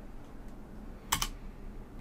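A single computer keyboard keystroke a little over a second in: the Enter key pressed to run a command.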